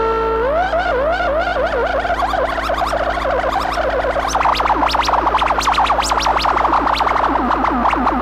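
Waldorf Blofeld synthesizer playing an arpeggiated patch built from two wavetables with no filter. It starts with notes that glide upward in pitch, then turns into a dense, fast run of short swooping notes that gets louder about four and a half seconds in.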